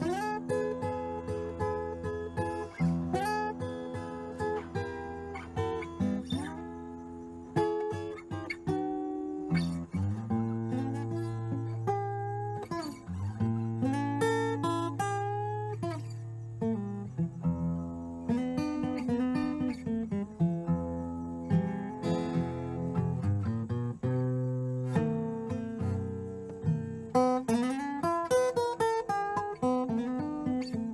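Steel-string acoustic guitar fingerpicked in Piedmont-style blues: the thumb keeps an alternating bass while the index finger picks the melody, with some notes bent.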